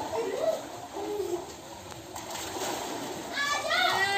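Water splashing and sloshing as children bathe in a concrete water channel, with children's voices calling out. Near the end a loud, drawn-out high call begins.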